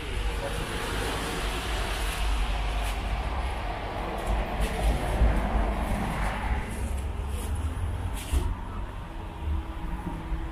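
Street traffic: a vehicle passing, its hiss swelling over the first few seconds and fading away by about seven seconds in, over a steady low rumble.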